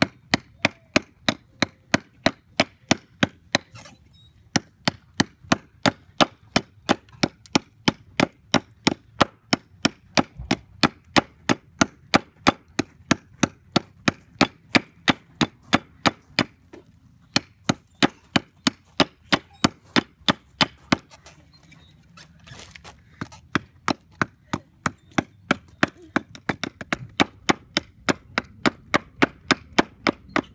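Small hatchet chopping into a wooden spoon blank resting on a wooden block, thinning down the handle: quick, even strokes about two or three a second, with brief pauses about four, seventeen and twenty-one seconds in.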